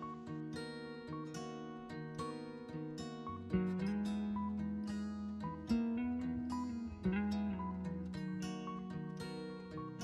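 Instrumental background music of quickly repeated plucked string notes over a held lower line.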